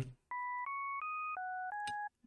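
Serum software synth playing a sine wave with its second harmonic added, a patch being tried out as a recreation of a pad sound. It plays a phrase of six short, even notes, each a pure tone with a fainter octave above it: three stepping up, then a drop and two more steps up. A click comes near the end.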